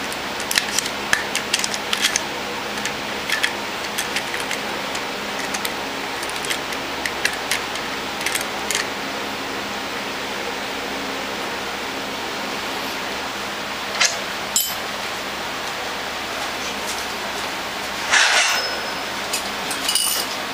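Small metallic clicks and ticks of a dial indicator and its threaded adapter being handled and screwed into the timing plug hole of a Bosch VE diesel injection pump, over a steady background hum. The clicks come thickly in the first half; two sharper clicks about fourteen seconds in and a short rustling burst near the end.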